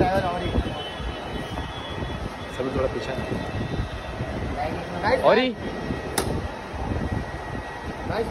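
Busy airport entrance ambience: a steady low rumble of traffic and crowd noise, with scattered voices and one loud drawn-out call, rising and falling in pitch, about five seconds in.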